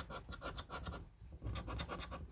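Scratch-off coating being rubbed off a Money Kingdom scratch card in rapid, short strokes, in two quick runs with a brief pause between them.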